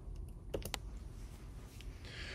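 A few faint clicks, three in quick succession about half a second in, over quiet room tone.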